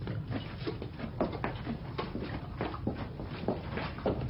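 Stable sounds of a horse and people moving about: irregular short knocks and scuffs over a low rumble.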